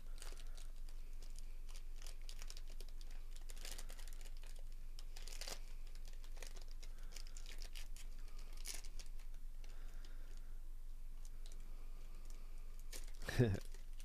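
Foil trading-card pack wrapper crinkling and tearing as it is opened by hand, a faint, irregular run of small crackles.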